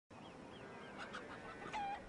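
Faint outdoor ambience with birds chirping, a few light clicks, and one short, louder call from a bird, possibly a fowl, near the end.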